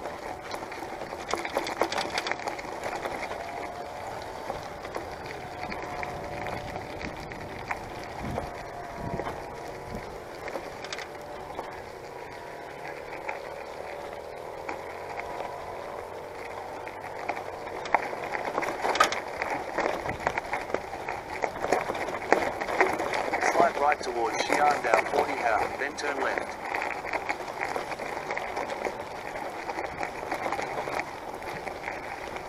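Bicycle rolling down a rough gravel track: tyre crunch with rattling clicks and knocks from the bike, growing denser and louder in the second half.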